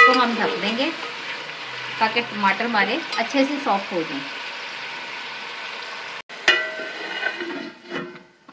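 Tomato masala sizzling in an aluminium pot while a steel ladle stirs and scrapes against the pot. About six and a half seconds in, a metallic clang with a second of ringing as the aluminium lid is set on the pot.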